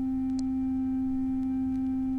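Electroacoustic music: a single steady, nearly pure electronic tone at a low-middle pitch, held unchanging with faint overtones and no decay.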